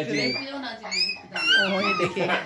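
A pet's high-pitched whining: a few short rising whines, then a longer wavering one in the second half.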